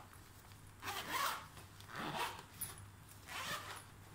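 Zipper on a black fabric backpack pocket being pulled in three short strokes, about a second apart.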